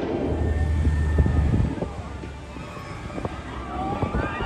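Fury 325, a Bolliger & Mabillard steel giga coaster, with its train running fast along the track: a deep rumble that is loudest in the first two seconds and then fades.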